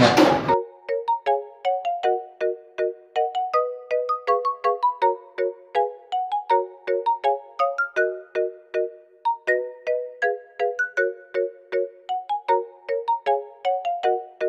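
Background music: a light melody of short plucked notes, a few a second, over a dead-silent background. It comes in about half a second in, when the room sound drops away.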